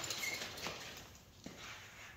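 A few faint footsteps on a hard floor, as a person walks off.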